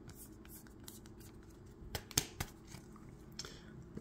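Quiet plastic handling sounds as a soft-sleeved trading card is slid into a rigid plastic top loader, with a few light clicks and ticks about halfway through and one more near the end.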